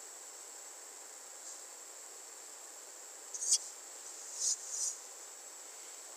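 Quiet recording noise floor: steady microphone hiss with a faint, thin high-pitched whine. A few brief soft high-pitched noises come around the middle.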